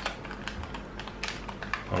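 Small silvery anti-static plastic bag being handled and opened by hand: crinkling with a string of irregular light clicks and ticks, over a steady low electrical hum.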